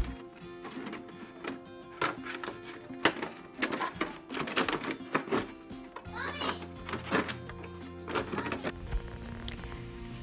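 Background music over irregular crackling clicks of a utility knife cutting through a thin plastic one-gallon water jug.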